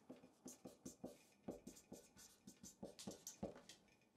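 Felt-tip marker squeaking and scratching across paper while writing, a faint series of short, irregular strokes.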